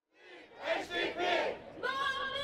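A protest crowd chanting and shouting, fading in from silence just after the start. Near the end a steady, high held note joins in.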